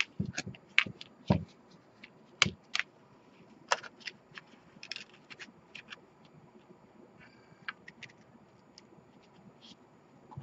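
Cardstock pieces of a handmade shaker card being handled and set down on a work mat: scattered light taps, scrapes and paper rustles, with a few low thumps in the first three seconds.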